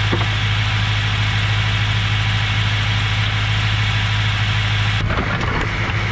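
Car engine idling steadily while hot transmission fluid pours from under the car and splashes into a drain pan. The pouring stops about five seconds in and the idle carries on.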